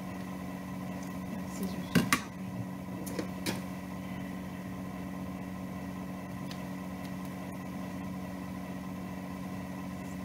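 Scissors snipping through gathered silky fabric: a quick cluster of sharp snips about two seconds in and two more near three and a half seconds, over a steady low electrical hum.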